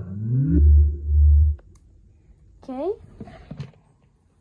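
JBL Boombox 2 portable speaker powering on: its start-up sound, a rising tone that runs into two deep bass pulses over about a second and a half. A short, quieter voice-like glide follows about three seconds in.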